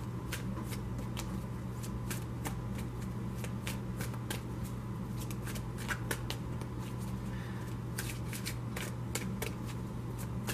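A deck of large oracle cards being shuffled by hand: a steady run of quick, irregular card clicks and slaps. A low steady hum runs beneath.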